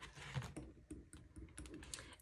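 Faint, scattered light clicks and rustles of plastic cash-envelope dividers and sleeves being flipped over in a ring binder.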